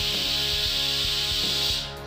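Background music with a steady beat and guitar, under a loud steady hiss that cuts off suddenly near the end.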